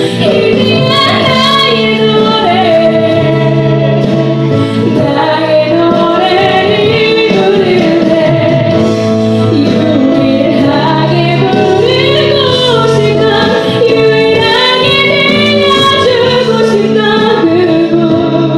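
A young woman singing a Christian praise song solo into a handheld microphone, her voice amplified over sustained instrumental accompaniment.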